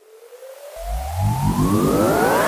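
Synthesized riser sound effect: a tone gliding steadily upward in pitch over a hiss, joined about three-quarters of a second in by a deeper layer of rising tones, growing louder throughout.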